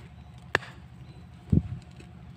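Machete chopping the thick roots of a young tree at its base during root pruning: two strikes, a sharp crack about half a second in and a duller thud about a second and a half in.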